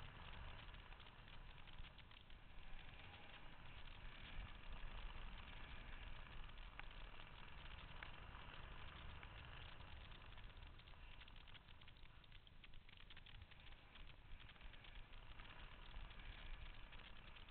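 Faint wind noise on the microphone: a steady soft rush with uneven low buffeting.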